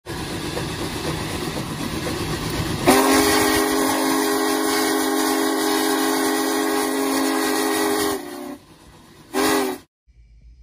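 Steam train sound effect: a steady rush of a train running, then a long steam whistle blast with several notes sounding together as a chord, cut off, and one short toot near the end.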